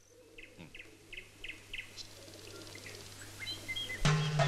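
Faint small-bird chirping: a run of short, quick chirps, about three a second, then a few higher whistled notes near the end.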